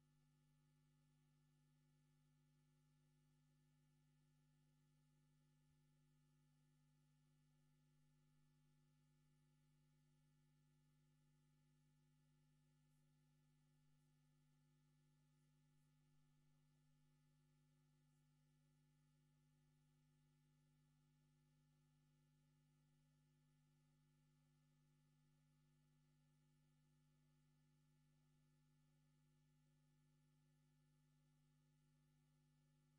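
Near silence: only a very faint steady low hum.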